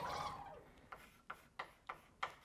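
Chalk writing on a blackboard: short sharp taps and strokes of the chalk, about three a second, starting about a second in. They follow a brief wavering sound that fades out over the first half second.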